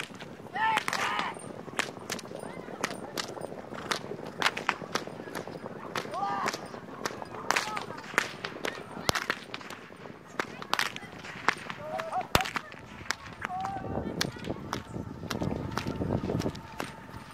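A horse herd being driven across a field: short shouted calls and many sharp cracks scattered throughout, with a rumble of many hooves building near the end.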